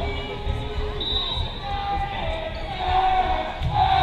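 Spectator voices and shouts echoing in a school gymnasium during a volleyball match, over a run of dull low thuds. The calls grow louder near the end.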